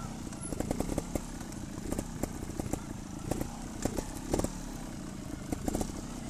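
Trials motorcycle engine running at low revs, heard close from the bike itself, with frequent irregular sharp knocks and rattles as it jolts over rough ground.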